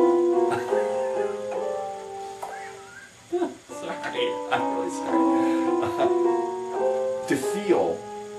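A small handheld electronic keyboard played with both hands: a run of held notes and chords that change about every half second, with a brief break about three seconds in.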